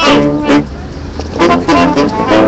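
Brass marching band starting to play: a held brass chord at the start and another about a second and a half in, with a short gap between.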